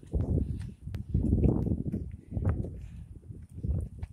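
A person breathing hard in ragged, heavy breaths from the effort of walking up a steep hill, with footsteps on a concrete road.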